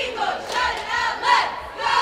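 A group of voices chanting a cheer in unison, shouted phrases coming in a steady rhythm about every half second or so.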